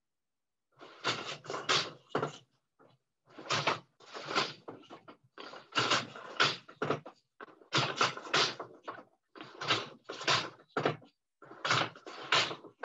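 Schacht Baby Wolf four-shaft wooden floor loom being woven on: a short cluster of wooden knocks and clatters about every two seconds as the shed is changed and the beater is pulled against the cloth, six rounds in all.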